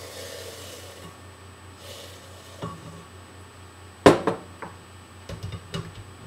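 Chicken broth poured from a measuring cup into a blender jar of pumpkin seeds, a soft splashing hiss in the first second. About four seconds in comes a sharp knock, the loudest sound, followed by a few lighter clicks and taps of kitchenware.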